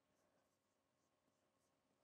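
Near silence: quiet room tone, with faint scratches of a stylus writing on an interactive touchscreen board.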